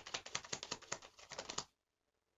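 A deck of tarot cards being shuffled in the hands: a quick, even run of card-edge clicks that stops shortly before the end.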